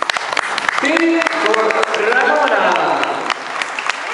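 Audience applauding, many scattered claps, with a voice speaking over the clapping from about a second in until past three seconds.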